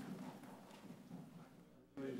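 Faint knocking and shuffling of an audience getting to its feet: seats and footsteps, growing quieter near the end.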